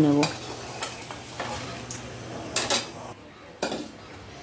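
Steel spatula scraping and knocking against a metal kadai as fried eggplant pieces are lifted out of hot mustard oil, over a light sizzle. A few short scrapes, the loudest two near the end.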